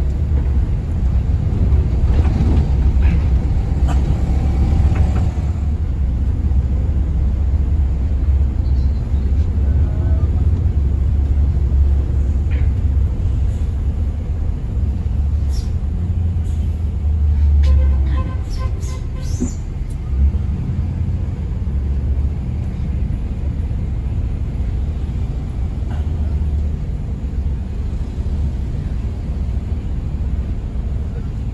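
A Mercedes-Benz OH 1526 NG coach's diesel engine and road noise heard from inside the cabin while driving: a steady low rumble. A burst of clicks and rattles comes around the middle.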